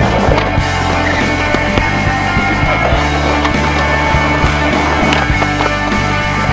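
Music with skateboard sounds mixed in: wheels rolling on concrete and the board clacking several times.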